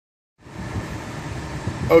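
2016 Ford Transit 1500 van's engine idling while stopped in drive, a steady low rumble heard inside the cabin, cutting in about half a second in.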